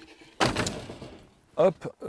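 A single hard knock about half a second in, trailing off over about a second, as an object is put down; a short spoken "hop" near the end.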